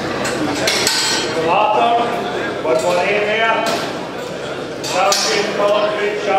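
Voices talking in a large, echoing livestock sale ring, with a few sharp metallic clanks and knocks from the steel pen gates and rails as a heifer is led in.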